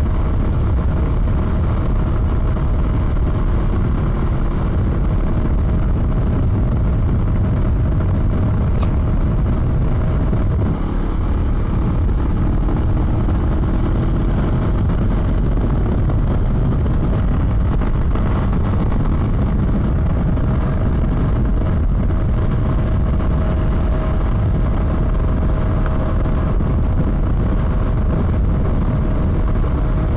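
2024 Husqvarna Svartpilen 401's single-cylinder engine running at a steady cruise, under heavy wind and road noise on the microphone. There is a brief dip in loudness about a third of the way in.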